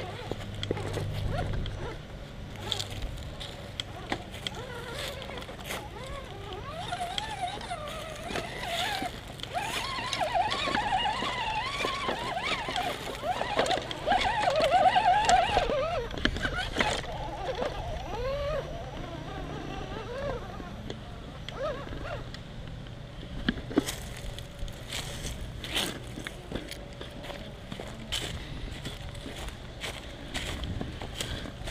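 Small electric RC rock crawler's motor and gear drive whining as it crawls over rocks and up loose wooden boards, with knocks of tyres and chassis on the wood. In the middle a louder stretch of wavering, warbling pitched sounds comes in over it.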